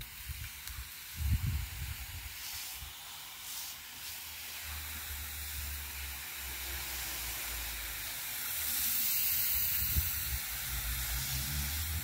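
Garden hose spray nozzle hissing steadily as a fine mist of water falls on soil and plants, a little louder for a couple of seconds after the middle.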